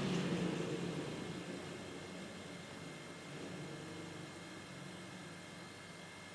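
Refrigerator compressor running as an air pump and filling the tank with pressure rising: a faint, steady low hum under a hiss that grows fainter over the first two seconds.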